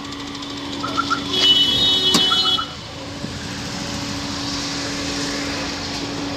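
A Chevrolet Sail's petrol engine idling on CNG just after the kit was fitted, a steady hum. A few short electronic beeps sound in the first half, and a steady rushing noise comes in about halfway.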